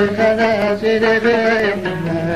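Amazigh folk song from the Middle Atlas: a voice singing with a wavering, ornamented line over a plucked loutar.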